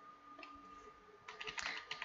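Faint clicking of a computer mouse and keys while working at a CAD program: a couple of clicks about half a second in, then a quick run of clicks in the second half, over a faint steady high hum.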